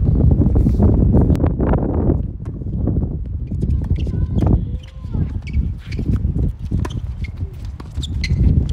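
Tennis rally on a hard court: racket strings striking the ball in sharp knocks a few seconds apart, with scuffing footsteps and short shoe squeaks about halfway through, over a loud low rumble.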